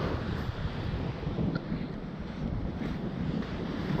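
Wind buffeting the microphone, over waves breaking on the shore.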